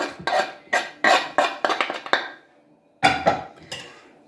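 A metal spoon clinking and scraping against a metal pot while chopped herbs are mixed into mashed-potato filling, a quick run of sharp knocks and clinks. It stops briefly past the middle, then the clinks resume.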